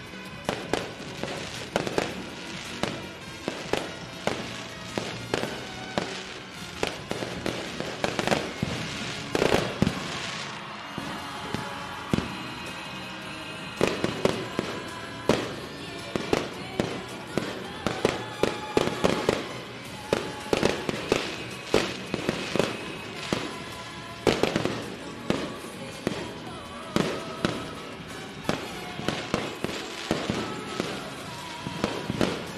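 Fireworks display: many sharp bangs going off in rapid, irregular succession, with music playing underneath.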